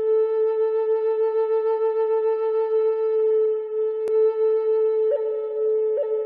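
A flute playing a slow melody: one long low note held with a slight pulsing, then stepping up to a higher note about five seconds in. A brief click sounds about four seconds in.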